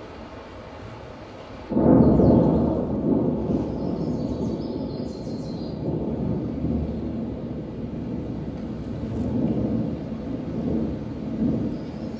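A deep rumble in the dance's recorded soundtrack. It breaks in suddenly about two seconds in and goes on in slow swells.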